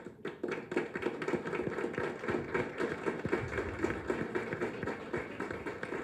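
Applause from a small group of people clapping, starting abruptly and continuing as an even patter of many hand claps.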